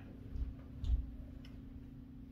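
Three soft thumps with faint clicks, footsteps of a man walking across a room, over a steady low electrical hum.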